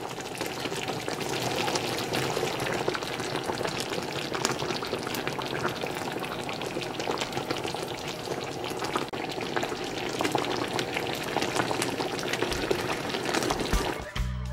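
Thick sweet and sour sauce bubbling and sizzling in a pan around slices of kingfish and vegetables: a steady crackle of many small pops.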